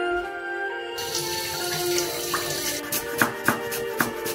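Kitchen tap water running into a stainless-steel sink while dishes are rinsed, starting about a second in and stopping shortly before the end. Near the end come a few sharp knife strokes, a courgette being sliced on a wooden chopping board.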